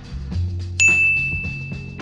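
A single bright notification-style ding about a second in, ringing on for about a second over background music with a steady beat.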